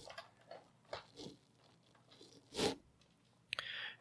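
Faint handling of a small plastic action figure and its parts: a few light, scattered clicks and taps, with one louder short noise about two-thirds of the way through.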